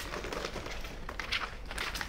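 Soft scuffs and rustles of a briefcase being handled and a folder of papers being pulled out of it, with a few light knocks and no single loud event.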